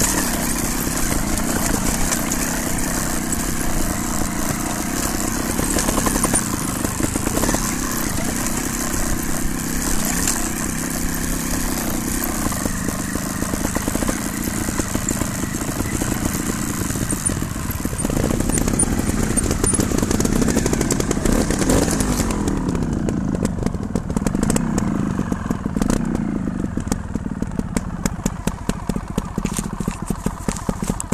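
Off-road motorcycle engine running as the bike rides over a rocky trail, under a rushing noise. About two-thirds of the way through the rushing drops away, and the engine is heard revving up and down, with rapid clicking.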